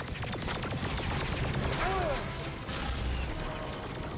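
TV soundtrack of a sci-fi firefight: a rapid burst of blaster fire in the first second or so, over low rumbling battle noise, with a short voice-like cry about two seconds in.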